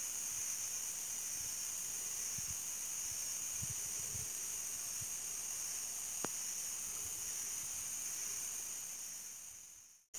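A steady, high-pitched chorus of insects, with a single faint click about six seconds in; the sound fades away near the end.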